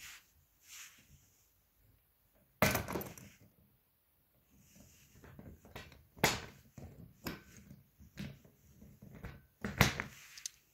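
Sharp plastic clicks and knocks from a hand working the TSA combination lock and its release slider on a hard-shell suitcase. The loudest come about two and a half seconds in and about six seconds in, followed by a few lighter clicks.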